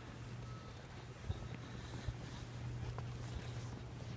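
Steady low hum of an engine running somewhere in the background, with a few soft crunches of footsteps in deep snow about a second apart.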